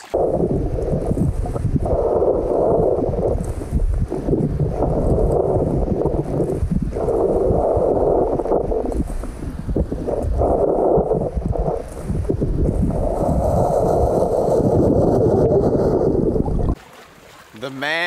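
Muffled underwater rumble of river water, sand and gravel being churned as a hand digs and fans sediment on the riverbed toward a sifting screen. It swells and eases in several surges, then cuts off sharply near the end.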